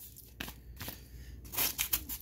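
Padded kraft bubble mailer being handled: a few light paper crinkles and taps, then a louder burst of rustling in the last half second as scissors are brought to its edge.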